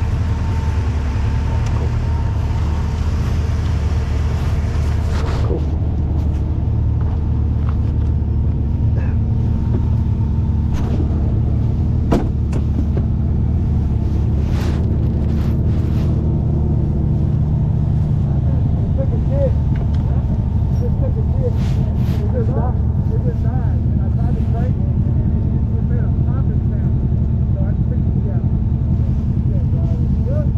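Side-by-side UTV engine idling steadily, with a hiss over it that cuts off about five seconds in. A few sharp clicks and knocks follow later.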